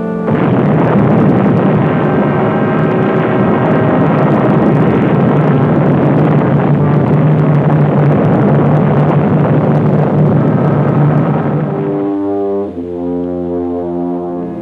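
Old film soundtrack: a sudden, loud, dense roar over dramatic brass-heavy music, standing for the nuclear blast arriving. About twelve seconds in, the roar drops away and leaves sustained brass chords.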